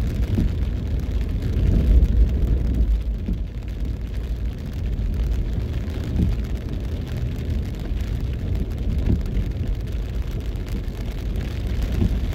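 Low rumble of a car driving on a wet road in rain, heard from inside the cabin, with light rain pattering on the car. The rumble swells briefly about two seconds in.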